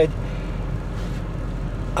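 A car idling, heard inside the cabin as a steady low hum.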